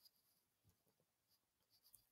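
Near silence, with a few very faint ticks.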